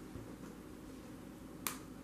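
Quiet room tone with one short, sharp click a little past one and a half seconds in.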